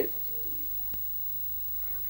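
A cat meowing: the end of a loud meow at the very start, then a fainter mew about half a second in.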